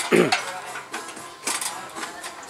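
Metal clinks and knocks from handling speaker-loading gear, with a short call whose pitch falls sharply just at the start.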